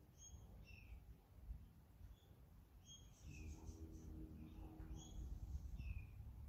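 Near silence with a few faint, short, high chirps from small birds scattered through it, and a faint low hum for about two seconds in the middle.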